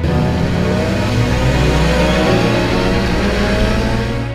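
Sport motorcycle engine accelerating, its pitch rising over the first two seconds or so, then running on at speed.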